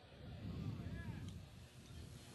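Faint, indistinct voices in the background, low and murmuring, with no clear words.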